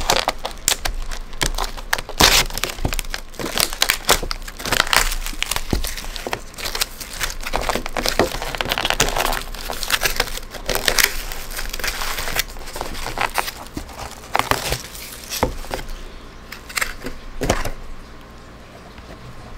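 Clear plastic film on a takeout pasta bowl crinkling and crackling irregularly as hands handle it and peel it off.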